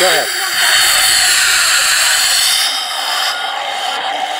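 Beer hissing and spraying out of a hand-pumped keg picnic tap into a plastic cup, a loud steady hiss that eases a little near the end. The foam in the cup suggests the keg is pouring foamy.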